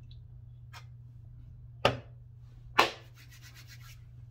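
A man drinking beer from an aluminium can: quiet swallowing and handling sounds, with a short sharp sound about two seconds in and a louder one just before three seconds, followed by a breathy rush of air that fades over about a second. A steady low hum runs underneath.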